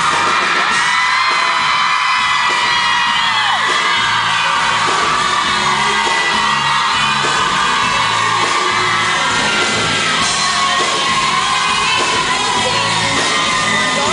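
Live pop-rock band playing at full volume, with singing over a steady, repeating bass line and whoops and yells from the crowd, recorded from within the audience in a large hall.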